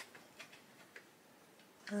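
Faint, irregular clicks of Derwent Lightfast coloured pencils knocking against each other as they are picked through: one sharp click at the start, then a few softer ticks.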